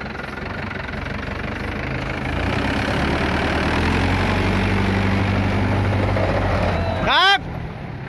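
Mahindra 575 DI tractor's diesel engine revving up from about two seconds in and running hard under load as it strains to pull the straw-loaded trailer out of the mud. Near the end a brief loud shout cuts over it.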